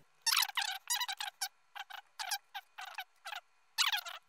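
A voice played fast-forward: rapid, high-pitched, chipmunk-like chattering syllables in quick bursts, with no low end.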